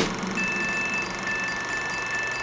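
Vintage-film sound effect: a steady hiss with a thin, steady high whine that comes in about a third of a second in.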